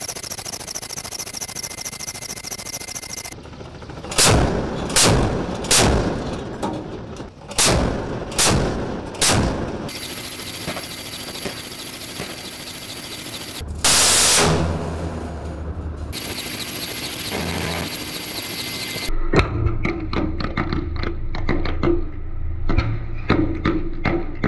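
Warship weapons firing at sea. A run of about seven heavy gun shots comes a few seconds in, and a loud rushing blast lasting about two seconds comes midway, typical of a ship-launched missile leaving its launcher. Rapid crackling popping follows near the end.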